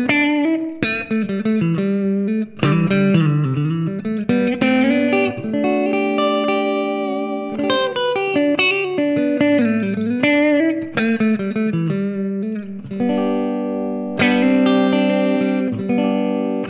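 Fena Guitars TL DLX90 electric guitar on a clean amp tone, played through its Alnico 5 P90 pickups in the middle position (neck and bridge together): picked single-note lines and ringing chords, with a few notes dipping in pitch.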